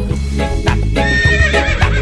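A horse whinnying, a wavering high call starting about a second in, over upbeat backing music with a steady beat.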